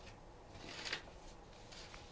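Faint room tone with one brief rustle of paper that swells for about half a second and stops about a second in.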